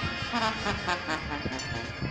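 A brass band playing a melody, with the notes stepping quickly from one to the next.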